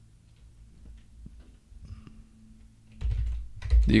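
Faint, scattered clicks of a computer keyboard and mouse over a steady low electrical hum. About three seconds in, a low rumble rises.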